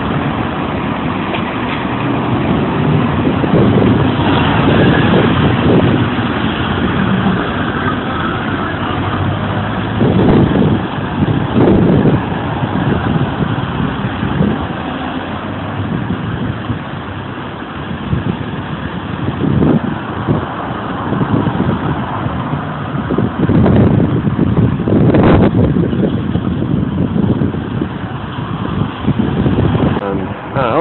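Loud, steady rumble of urban road traffic, swelling several times as vehicles pass close by.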